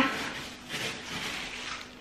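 Soft rustling and handling noise, as of a coat and a held object being moved about.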